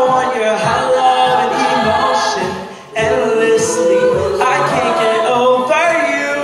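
Mixed-voice a cappella group singing in harmony behind a lead voice, with no instruments. The voices fade out briefly before the middle and then come back in all together at once.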